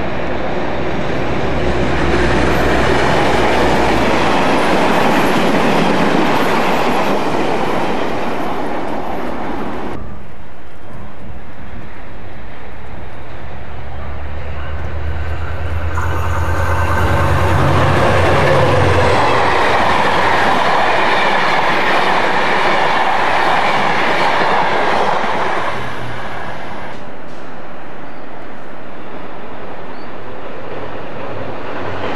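A run of Irish Rail GM diesel locomotives passing at speed, one after another: a low, steady engine drone with the wheels running over the rails. The sound changes suddenly about ten seconds in and again around sixteen and twenty-six seconds, as one train gives way to the next.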